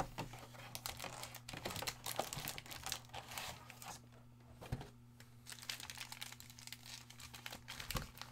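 Foil trading-card packs crinkling and rustling as they are pulled out of a cardboard hobby box and handled, in a run of irregular crackles.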